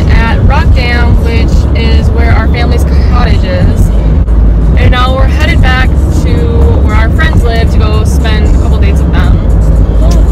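Women singing along to music inside a moving car, with a steady low road rumble under the voices.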